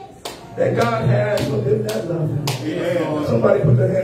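A man's voice singing a worship song into a microphone through the church sound system, coming in about half a second in, over a steady beat of sharp hand claps.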